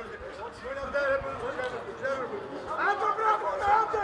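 Men's voices talking and calling out at moderate level, with no clear words.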